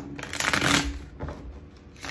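A deck of tarot cards being riffle-shuffled on a tabletop: a quick flutter of cards, loudest just under a second in, followed by softer rustling as the halves are pushed together and bridged.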